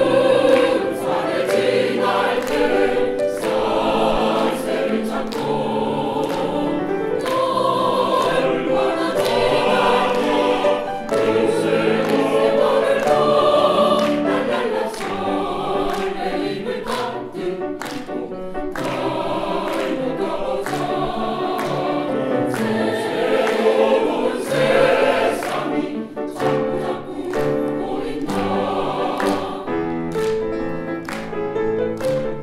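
Mixed choir of men's and women's voices singing a choral piece, with piano accompaniment.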